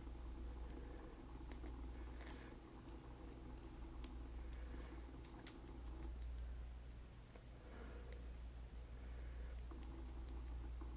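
Faint small clicks of a tennis chain's push-button box clasp being worked by hand, the sharpest about two seconds in and another near eight seconds, over a low steady hum.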